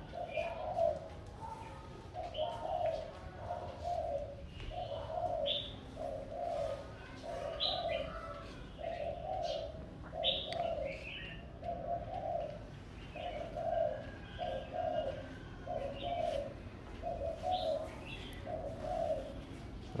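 A dove cooing in a long, even series of short notes, a little more than one a second, with scattered high chirps from other birds.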